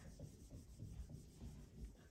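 Faint rubbing of a handheld eraser wiping dry-erase marker off a whiteboard.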